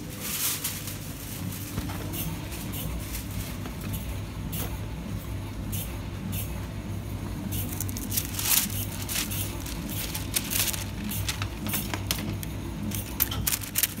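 Shop interior ambience: a steady low hum with scattered rustles and clicks, busiest about two-thirds of the way through.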